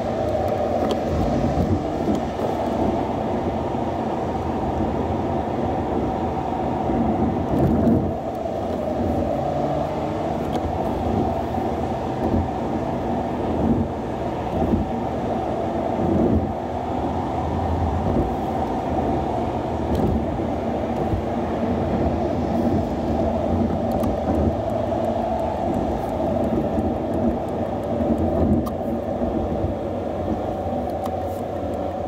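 Steady rumble of a car driving at town speed, engine and tyre noise on asphalt, with a couple of low thumps from bumps in the road.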